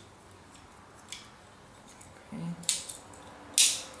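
Plastic halves of a transforming robot toy being handled and snapped together: a faint click about a second in, a sharper click near three seconds, and a louder short scraping snap shortly before the end.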